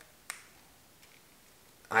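A single sharp plastic click about a third of a second in as the arterial blood gas syringe is handled, then quiet.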